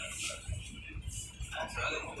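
Rumble and rail clatter of a moving passenger train heard from inside the coach, with a brief unidentified call or voice near the end.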